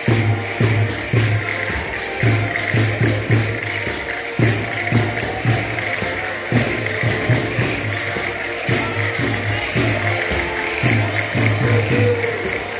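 Live Portuguese folk music for the cana verde dance: a steady low beat about twice a second, with jingling percussion and a continuous melody line over it.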